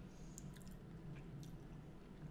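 Faint mouth and lip sounds of a whisky taster, a few small wet clicks over quiet room tone.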